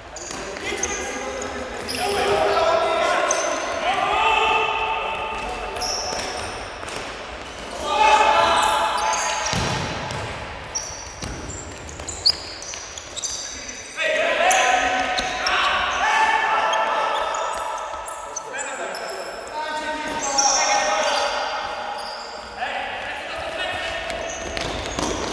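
Indoor futsal in a large, echoing sports hall: sneakers squeaking on the court floor and the ball being kicked, with a sharp kick about halfway through.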